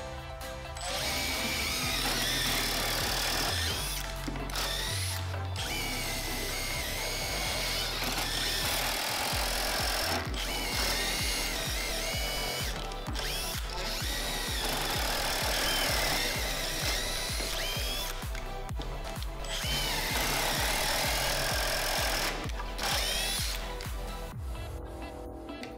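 Makita 18 V cordless impact drivers (DTD152Z and brushless DTD154Z) drilling holes in a softwood plank with drill bits. They run with a whine in stretches of a few seconds, with short stops between holes.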